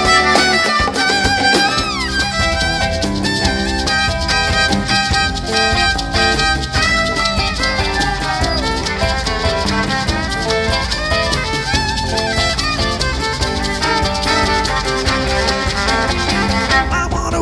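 A live band playing an up-tempo instrumental passage, a fiddle carrying the melody with some sliding notes over a steady drum-kit beat.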